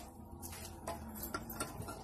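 Faint, irregular clicks and light taps from hands working at a Yamaha SR motorcycle, about five in two seconds. The engine is not running.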